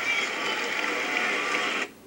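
Basketball broadcast sound from a television: steady arena crowd noise with faint voices mixed in, cutting off abruptly near the end.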